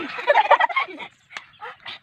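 A child's loud non-word vocal burst, rapid and warbling, lasting about a second, followed by a few faint clicks.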